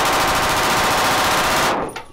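Automatic rifle firing one long, rapid burst of shots that stops shortly before the end.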